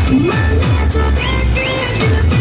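Loud dance music with a heavy bass line and repeated deep bass thuds that drop in pitch.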